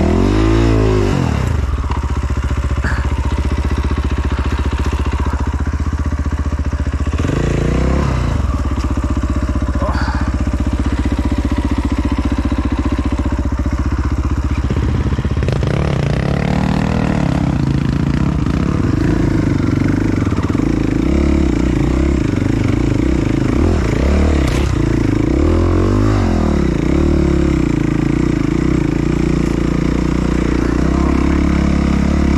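Off-road dirt bike engine close up, revving up and down a few times at low speed over rough ground, then held at steadier, higher revs in the second half.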